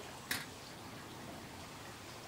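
Steaks sizzling faintly on a charcoal grill as a steady soft hiss, with one short click about a third of a second in.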